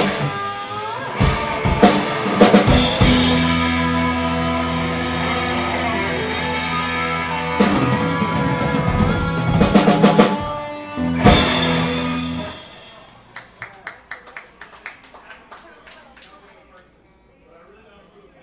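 Live rock band of drums, electric bass and guitar ending a song with loud accented hits and long held chords, cutting off about twelve seconds in. Light scattered clapping from a small audience follows.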